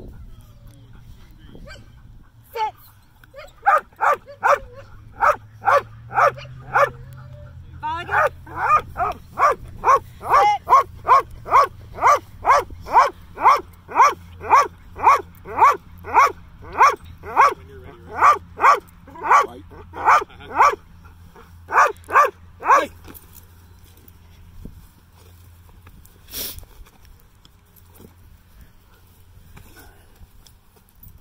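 Dutch Shepherd barking over and over in a fast, even rhythm, a little over two barks a second, at a helper holding a bite sleeve. The barking starts a few seconds in, breaks briefly, then runs on until it stops well before the end, followed later by a single sharp click.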